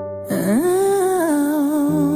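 A female voice in a pop ballad sings a wordless note that slides up about a third of a second in and is then held with a wavering vibrato, over sustained chords.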